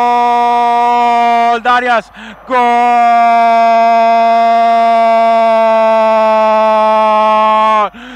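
A radio football commentator's long, drawn-out goal cry, held loudly on one pitch. About two seconds in it breaks briefly for a few quick syllables, then is held again for over five seconds, sagging slightly in pitch before it stops near the end. It marks a goal just scored.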